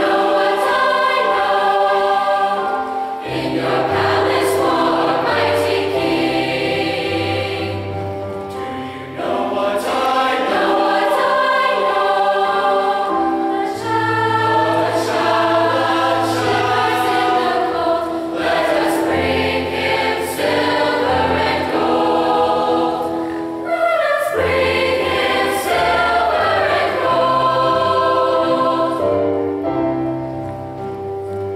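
Mixed high school choir of girls' and boys' voices singing a piece in parts, in sustained phrases with short breaks between them.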